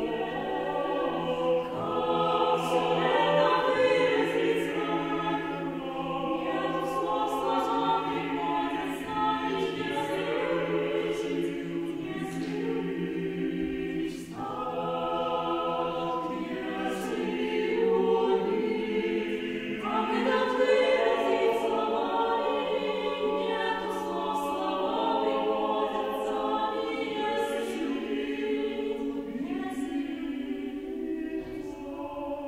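Small mixed choir of men's and women's voices singing a cappella in sustained, shifting chords, with sharp consonants. The voices drop away briefly about halfway through, then re-enter.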